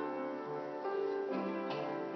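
Instrumental offertory music on a keyboard instrument: slow, sustained chords that change every half second or so.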